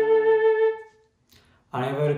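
A single held, flute-like note with a wavering vibrato, the closing note of a melody, fading out under a second in. After a brief silence a man starts speaking near the end.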